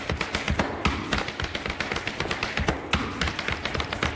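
Irish dance hard shoes striking the studio floor in a fast, irregular run of taps and clicks.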